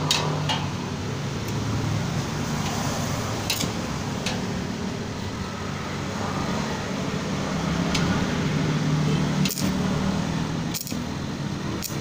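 Steady mechanical hum, with scattered sharp clicks that come closer together near the end as a stick-welding electrode is tapped against the steel bolt to strike an arc.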